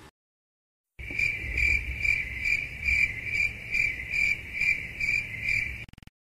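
Cricket chirping, a high trill pulsing about twice a second over a low rumble. It starts abruptly about a second in and cuts off just before the end: an edited-in 'crickets' sound effect marking an awkward silence.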